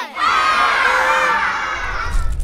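A group of children cheering and shouting together, many voices at once, tapering off slightly near the end.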